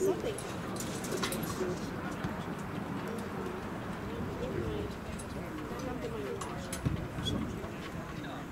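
Distant voices of players and onlookers carrying across an outdoor sports field, with a few faint clicks and a soft thump about seven seconds in.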